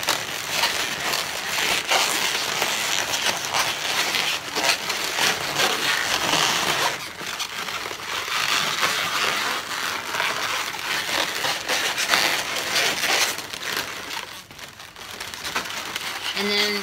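Latex twisting balloons rubbing and squeaking against one another as a long 160 balloon is wrapped around a balloon sculpture: a dense, scratchy rubbing with brief lulls about seven seconds in and near the end.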